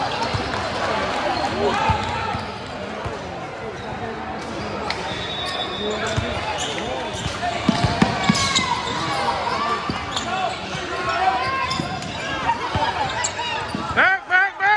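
A basketball bouncing on a hardwood gym court during play, with knocks scattered through, the most of them about eight seconds in, over spectators and players talking and calling out.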